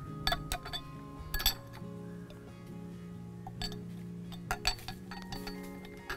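A spoon clinking against a stemmed drinking glass a handful of times, in separate light clinks, while the glass is handled and syrup is spooned into it. Soft background music plays underneath.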